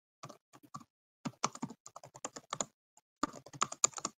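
Typing on a computer keyboard: irregular runs of clicking keystrokes, busiest about a second in and again near the end.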